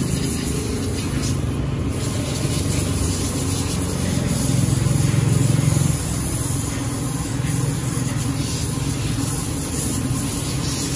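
Aerosol cleaner hissing through a straw into the bores of a twin-cylinder motorcycle throttle body, over a steady low engine-like rumble that swells slightly midway.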